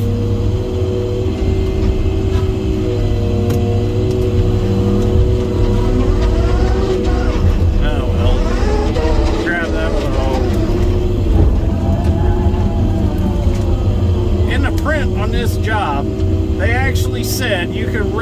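Diesel engine of a Timberjack 608B feller buncher running steadily under working load, heard from inside its cab, with a deep rumble and a steady drone.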